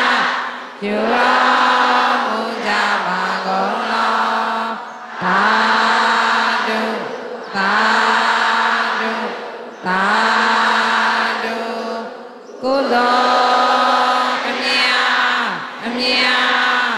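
A large group of Buddhist nuns chanting together in unison, in long held phrases of a few seconds each on a near-steady pitch, with short breaths between phrases.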